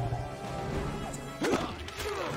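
Dramatic orchestral film score under fight sound effects, with one sharp loud hit about one and a half seconds in and a few lighter knocks around it.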